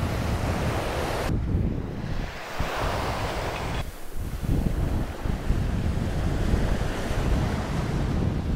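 Wind buffeting the microphone in gusts, with the wash of small surf breaking on the beach underneath.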